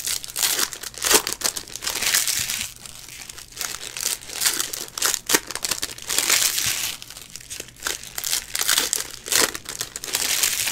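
Foil wrapper of a Panini Illusions football card pack crinkling as it is handled and pulled open, with the cards sliding against each other as they are flipped through, in irregular rustling bursts.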